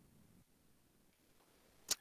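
Very quiet room tone, then one brief sharp click near the end just before speech resumes.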